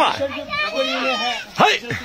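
Excited voices of adults and children shouting and cheering encouragement, with a short high yell near the end.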